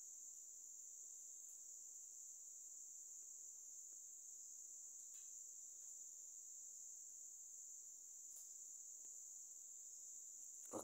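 Near silence with a faint, steady high-pitched drone, picked up through a phone's microphone.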